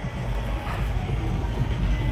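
Arena music playing over a steady low rumble of crowd noise, picked up on a player's body microphone.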